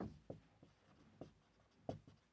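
Marker pen writing on a whiteboard: a handful of faint, short strokes and taps at irregular intervals as letters are written.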